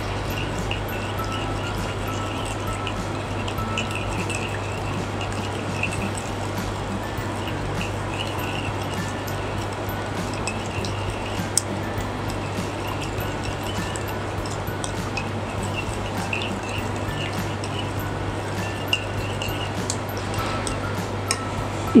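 A metal spoon stirring a runny vinaigrette in a glass bowl, clinking and scraping against the glass, over steady background music.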